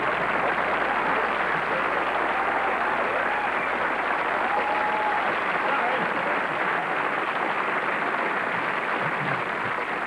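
Studio audience applauding and cheering steadily, a long ovation with no words over it.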